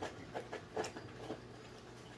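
A few soft mouth clicks and lip smacks, about five in a second and a half, the sounds of savouring a sip of liquor just tasted.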